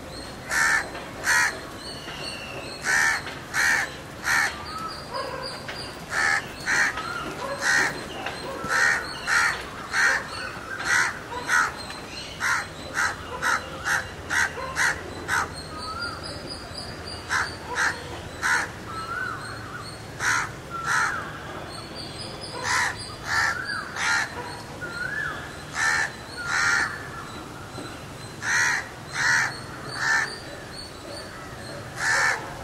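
Crows cawing over and over, short harsh calls in runs of two to five, with a few fainter whistled calls from other birds in between.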